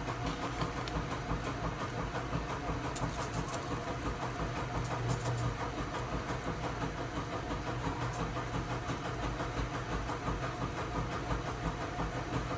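A steady low hum, with a few faint light ticks from a spice shaker being shaken.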